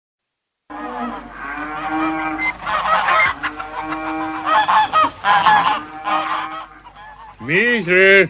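Farmyard geese honking and cackling, several at once, on an old, early-twentieth-century recording. Near the end a man shouts out a call.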